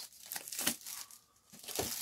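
Clear plastic shrink wrap crinkling in several short bursts as it is handled and pulled away from a trading-card box.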